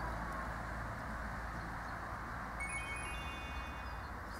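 Under a steady low outdoor rumble, several high, clear chime tones start one after another about two-thirds of the way in and ring on until near the end, like a set of chimes being struck.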